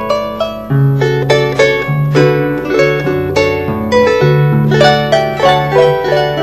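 Venezuelan harp being played: a quick plucked melody in the upper strings rings over a bass line of deeper notes that change about twice a second.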